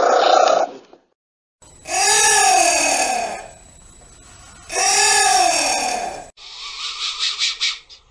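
Anteater calls: a short call at the start, then two long drawn-out calls that each rise and then fall in pitch, about three seconds apart. Near the end comes a quick run of short, noisy puffs.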